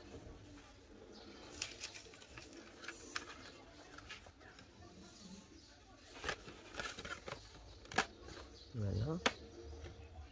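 Sheets of patterned scrapbook paper being lifted and bent by hand: faint rustling with a few light clicks and taps spread through, and a brief murmured voice near the end.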